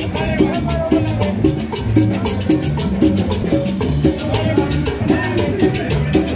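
Upbeat Latin dance music with a bass line and a quick, steady beat of shaker and percussion.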